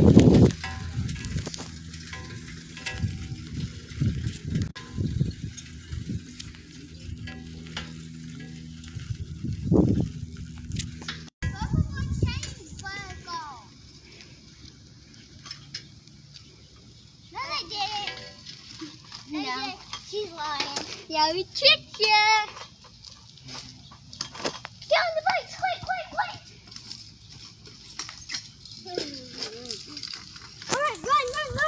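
Rumbling and knocks from a bicycle being ridden, picked up by a phone held at the handlebars. After a sudden cut about eleven seconds in come children's high-pitched voices calling out in bursts, off and on to the end.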